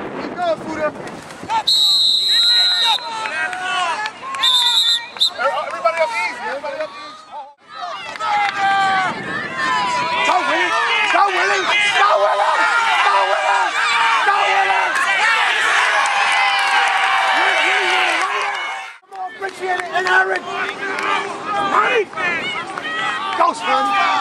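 Sideline spectators shouting and cheering over a youth football play, many voices at once and loudest through the middle. Two short blasts of a referee's whistle in the first few seconds.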